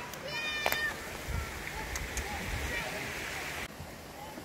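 Mountain stream rushing as a steady hiss, with a short high-pitched cry just after the start and faint distant voices.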